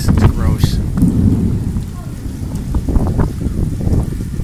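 Thunder rumbling overhead in a rainstorm, with rain falling on wet stone paving.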